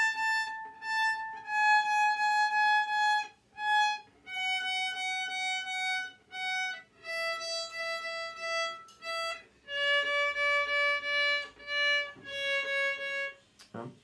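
A violin playing a slow descending scale in A major, each note bowed in a long-short pair. The left-hand fingers are spread too far apart, so a finger lands in the wrong place and a note comes out out of tune.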